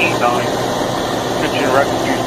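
Steady hum of a Pierce fire engine running, with a voice on the dispatch radio breaking in over it.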